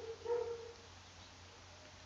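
Two faint, short, steady high whines in the first second.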